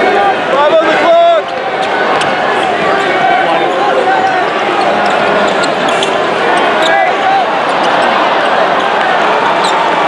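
Live basketball play on a hardwood court: a ball bouncing, with a few sharp clicks, over the steady chatter of a large arena crowd.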